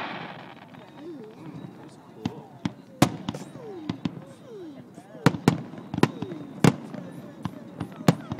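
Aerial firework shells bursting: about seven sharp bangs, the loudest about three seconds in and a quick run of four between five and seven seconds, with people's voices murmuring underneath.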